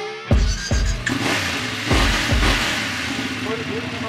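A motorcycle engine started with the handlebar starter button and running, under background music with a beat.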